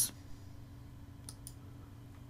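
Two computer mouse clicks in quick succession, like a double-click, over a low steady hum.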